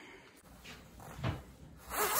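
Faint handling noise with a few soft, muffled knocks, the loudest a little after a second in.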